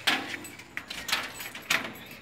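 Footsteps of a person walking, with a light metallic jingle and sharp clicks about every half second. A short spoken word is heard at the start.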